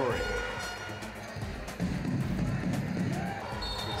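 Basketball arena sound: crowd noise with a basketball bouncing on the hardwood court.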